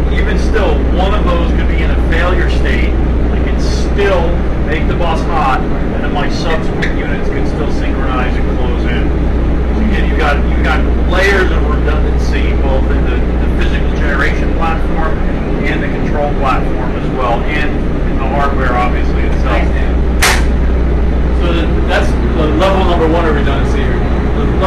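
Steady low drone of paralleled generator sets running, under overlapping voices, with one sharp click about twenty seconds in.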